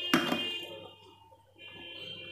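A sharp click and light handling noise as a round two-sided makeup mirror is pushed and turned to fit it into its stand. A faint steady high-pitched tone sounds behind it, dropping out around a second in and coming back.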